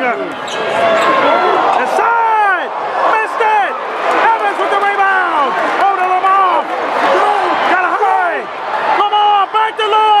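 Sneakers squeaking again and again on a hardwood basketball court, with the ball bouncing and crowd voices behind.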